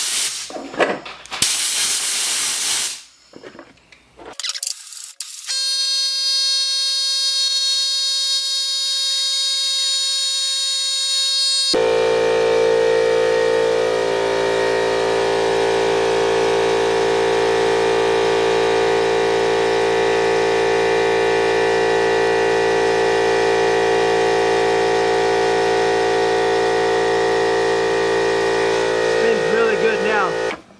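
Blasts of compressed air hiss from an air-compressor blow gun aimed at a skateboard wheel bearing to blow out caked mud, then the wheel spins fast on the cleared bearing with a high, steady whine. About twelve seconds in, a loud, steady drone at a constant pitch takes over and holds to the end.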